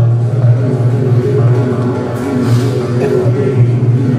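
Flamenco guitar playing a granaína passage: plucked melodic notes moving over a sustained low bass note.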